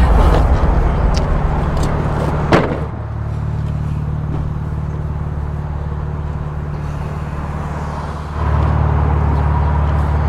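A car engine idling steadily, with a single sharp click about two and a half seconds in. The idle drops a little in level about three seconds in and comes back louder near the end.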